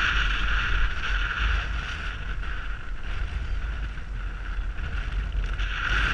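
Wind buffeting the microphone of a camera on a moving KTM Duke motorcycle, with the bike's engine running underneath in a steady low rumble; it eases a little in the middle.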